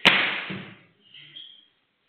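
A sharp smack right at the start, followed by under a second of paper rustling as papers are handled and set down on a desk, then a brief faint rustle.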